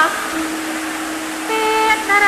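Javanese vocal music accompanying a Bedhaya court dance, at a break between sung phrases: a single low note is held steady, and about one and a half seconds in a higher sung note enters to begin the next phrase.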